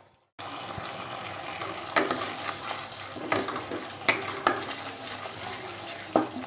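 Spice paste sizzling in hot oil in a wok-style pan as it is fried down, stirred with a spatula that scrapes and knocks against the pan several times.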